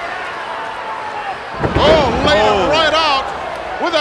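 A wrestler's body slamming down onto the canvas of a wrestling ring as a front suplex lands, about one and a half seconds in. Excited voices follow right after the impact.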